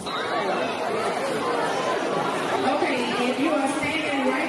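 Crowd chatter: many children and adults talking at once in a school gymnasium.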